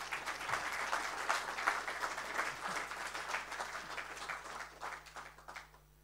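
Audience applauding: many hands clapping densely, then thinning out and fading near the end.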